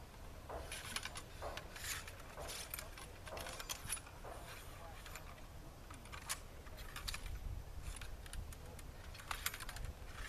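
Flintlock muskets being loaded by hand: steel ramrods drawn, rammed down the barrels and returned, giving scattered faint metallic clicks and rattles.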